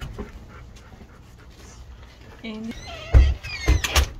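A dog whining. There is a short flat whine about two and a half seconds in, then several high whimpers that fall in pitch near the end. Two dull low thumps, the loudest sounds, come among the whimpers.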